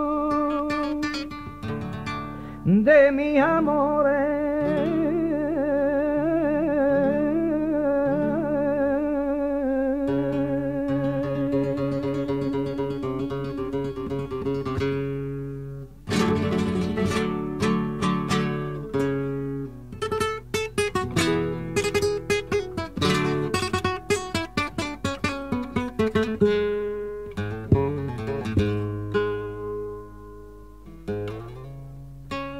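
Recorded flamenco song: a male cantaor holds a long, wavering melismatic line over acoustic flamenco guitar, and the voice stops about halfway through. The guitar then carries on alone with a passage of quick plucked notes and strums.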